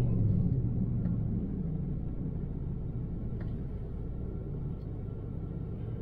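Low engine and road rumble inside a moving pickup truck's cab, easing off and growing quieter over the first few seconds, then holding steady.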